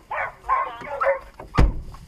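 Harrier hounds barking in three short barks, then a single sharp knock about a second and a half in.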